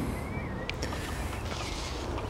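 Water with neem oil and soap sloshing inside a plastic drinks bottle as it is shaken by hand to get the oil to dissolve.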